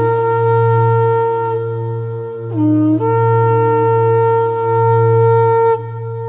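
A wind instrument holds long melody notes over a steady low drone, dropping briefly to a lower note about halfway through and returning, then growing quieter near the end.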